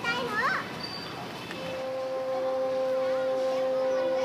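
Children's voices calling briefly at the start over a background of many voices; from about one and a half seconds in, one long steady note is held for about three seconds.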